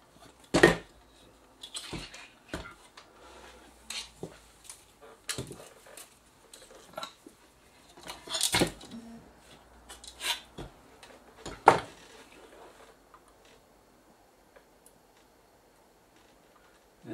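Irregular knocks and clatter of a plasma TV power supply circuit board being turned over and set down on a workbench, with the sharpest knocks about half a second in, around eight and a half seconds and near twelve seconds.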